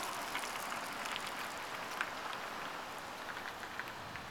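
Steady outdoor background hiss with a few faint clicks.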